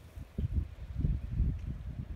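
Wind buffeting the microphone: an uneven low rumble in gusts, starting about half a second in.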